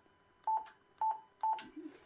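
Yaesu FT-450D transceiver's key beep: three short, identical beeps about half a second apart as the BAND button is pressed and the radio steps up through the bands.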